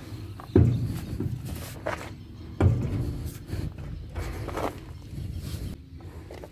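Footsteps on dirt and gravel, with two dull thumps about two seconds apart.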